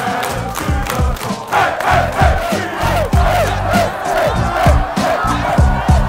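A crowded room of men chanting and shouting together with clapping, over music with a low, thumping beat.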